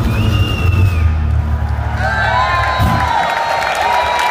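The last low note of a solo amplified acoustic guitar song ringing out and dying away over about three seconds. The audience whistles, and from about halfway in it cheers with long held whoops.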